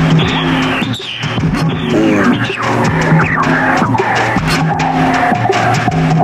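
Experimental electronic music: a low note repeating about once a second under noisy, sweeping textures, with a held mid-pitched tone coming in about two-thirds of the way through.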